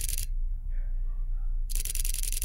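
Fujifilm X-H2S shutter firing a high-speed burst at 15 frames per second: a rapid run of quiet clicks that stops just after the start, then a second burst begins near the end.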